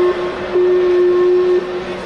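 A steady low-pitched horn or buzzer tone in two long blasts of about a second each, over a background of arena crowd noise.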